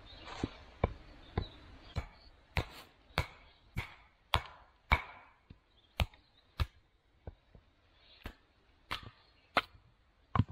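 Batoning: a wooden baton knocks the spine of a knife blade down through a birch log standing on a chopping stump. There are about fifteen sharp knocks, roughly one to two a second, with a couple of short pauses.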